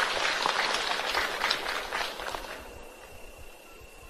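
Audience applause in a large hall, dying away about two and a half seconds in. A faint, steady high-pitched tone from the sound system is left underneath.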